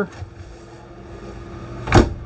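A compact RV refrigerator door swinging shut, closing with a single sharp knock near the end. Before the knock there is a low, steady background hum.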